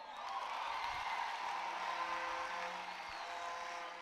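Congregation clapping and calling out in response to the preacher, quiet, with a soft held chord of several steady tones, like a church keyboard, coming in after about a second and a half.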